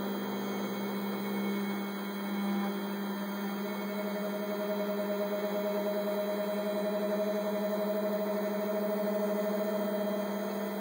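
MakerBot Replicator 5th generation 3D printer's motors running as it moves its build plate and extruder into position before printing: a steady hum, joined about three and a half seconds in by a higher, steady whine.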